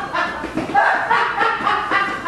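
People's voices talking and laughing, loosely overlapping, with no clear words.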